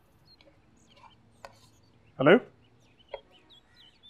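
Faint outdoor birds chirping here and there in the background, with two light clicks of a spoon against a cooking pot. A man's voice says "hello" once, loudly, just past halfway.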